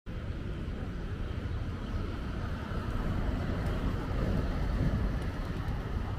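Wind buffeting the microphone outdoors: a steady low rumble with no speech, swelling a little in the middle.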